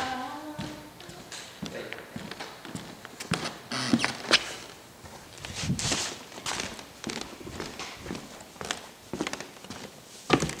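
Footsteps and knocks on a wooden floor: irregular taps and thuds, with a louder scuffing patch and a sharp click about four seconds in.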